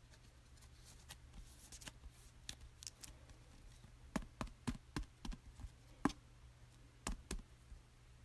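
Faint clicks and plastic rustles of a trading card being handled and slid into a plastic sleeve and rigid top loader. The clicks come sparsely at first, then in a run of sharper ones from about four to seven and a half seconds in.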